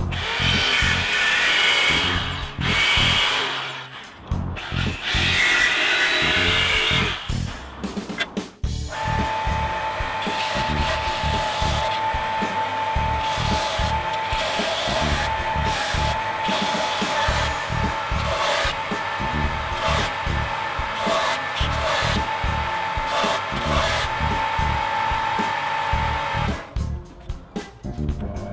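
A jigsaw cutting thin aluminium sheet in two loud bursts, then a belt sander running steadily with a constant whine as the metal edge is ground on the belt. Background music with a beat plays throughout.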